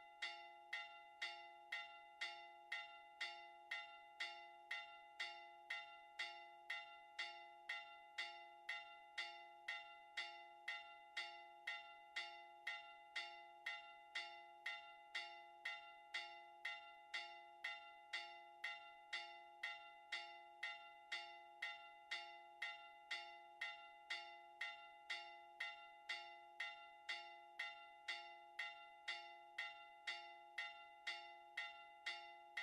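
Church bells struck in a fast, even rhythm, about three strikes every two seconds, each ringing on into the next, as part of a Maltese festive peal ('mota').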